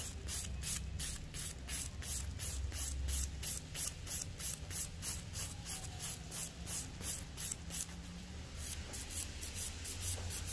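A nail file filing a fingernail in quick, even back-and-forth strokes, about three or four a second.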